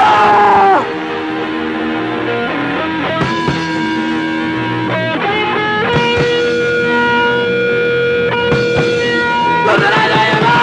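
Hardcore punk band playing live, heard on a soundboard recording: distorted electric guitar holding long sustained notes. The pitch slides down in the first second and again at the very end.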